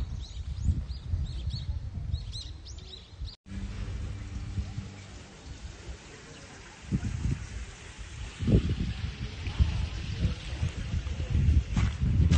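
Small birds chirping in quick, repeated short calls for the first three seconds or so, cut off abruptly. Underneath, a low, uneven rumble runs throughout, with a few sharp clicks near the end.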